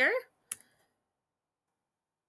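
A single short click from a computer, about half a second in, just after the end of a spoken word; the rest is near silence.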